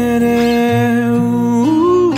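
A pop ballad: a singer holds one long steady vocal note, stepping up in pitch near the end, over a soft sustained accompaniment.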